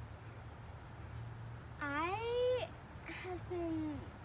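Insects chirping steadily, about three short high chirps a second. About halfway in, a child's voice makes a drawn-out wordless sound rising in pitch, followed by brief murmurs near the end as she hesitates before answering.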